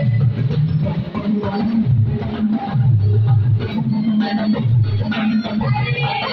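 Live church band music: an electronic keyboard playing in an organ sound over a repeating low bass line, with drums keeping time.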